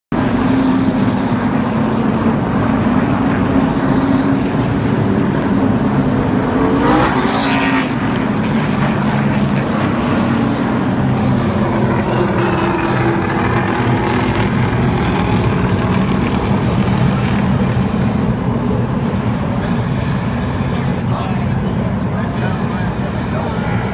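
The V8 engines of a pack of NASCAR Cup Series stock cars running as the field goes around the track, a loud, steady drone. About seven seconds in, cars pass close by, with a sharp rise in pitch and loudness.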